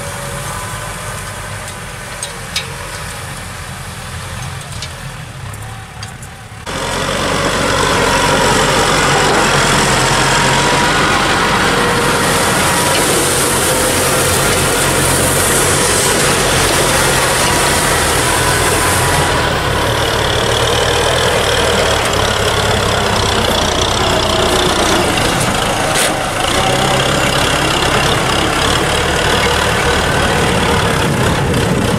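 Kubota M6040 tractor's diesel engine running steadily under load as it pulls a disc plough through the soil. The sound steps up suddenly and becomes much louder about seven seconds in.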